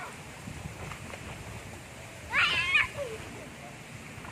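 A single high-pitched wavering cry a little over two seconds in, lasting about half a second, over a faint steady background noise.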